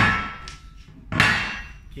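A heavy metal weight-vest plate dropped flat onto a wooden table twice, about a second and a quarter apart: each a loud clang with a short metallic ring dying away.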